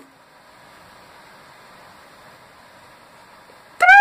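Faint steady hiss of room noise, then near the end a boy's sudden loud, high-pitched yell held on one note.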